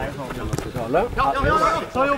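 People talking and calling out. No other sound stands out.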